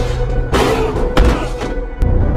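Film-trailer music with two heavy thuds about half a second and a second in, the second the louder: the sound-effect hits of a body falling and landing on the ground.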